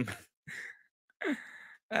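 A man's breathing close to the microphone: a short breath about half a second in, then a longer sighing breath with a faint falling hum.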